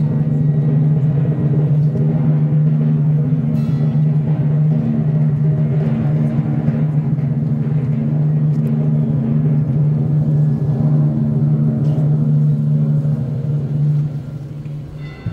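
Brass procession band holding one long, loud, unchanging chord, weighted in the low brass, that breaks off near the end.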